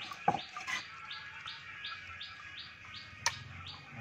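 A small bird chirping over and over, evenly, about three high chirps a second. Two sharp clicks cut in, about a third of a second in and again near the end.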